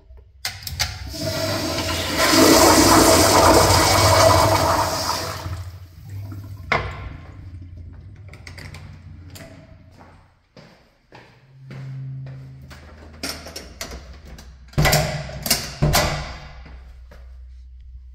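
Public restroom toilet flushing: a loud rush of water for about five seconds that tapers off into a quieter trickle as the bowl refills. A few sharp knocks follow near the end.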